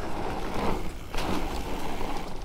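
Riding noise from a Specialized Turbo Levo electric mountain bike on a forest trail: an uneven rushing of tyres over the ground with a few short clicks and rattles from the bike.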